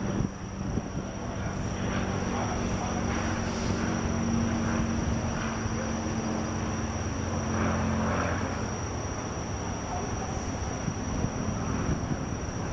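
Light propeller aircraft on landing approach, its engine giving a steady droning hum that weakens about two-thirds of the way in.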